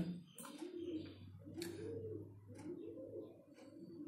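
Faint cooing of a pigeon: a few low, rising-and-falling coos, with a thin click about one and a half seconds in.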